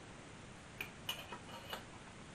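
A few faint, light clicks and taps, about five in the second half, as hands and a small tool work the wiring and tag board into the metal chassis of a Marconi CR100 receiver.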